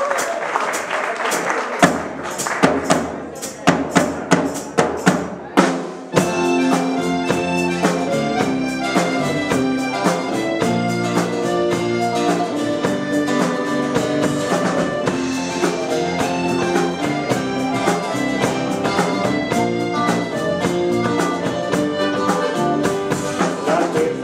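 Live band starting a song: for the first few seconds separate drum hits over a bass note lead in, then at about six seconds the full band comes in together, with bass guitar, electric guitars, keyboard and drum kit playing an instrumental introduction.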